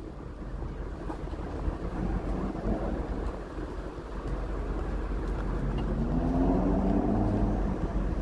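Street traffic, with a vehicle engine passing and growing louder over the second half.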